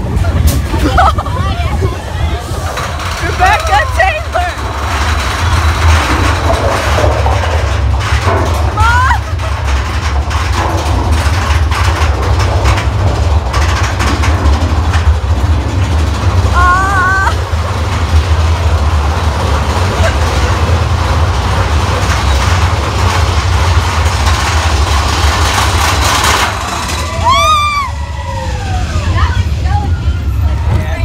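Steady low rumble of a theme-park ride vehicle in motion through an indoor show scene, with riders' short shouts now and then and a couple of falling-pitch screams near the end.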